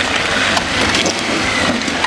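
Nissan Patrol 4x4 crawling over loose rock, stones crunching and cracking under its tyres with many small sharp clicks, its engine running underneath.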